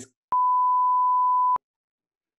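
A single steady electronic bleep: one pure, unwavering tone about a second and a quarter long, switching on and off abruptly with a click.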